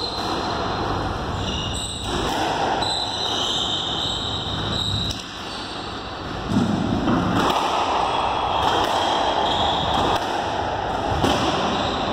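Steady background noise in a squash court, with a few light thuds of a squash ball between points.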